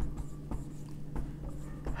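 Marker writing on a whiteboard: a run of short, faint strokes as a word is written out.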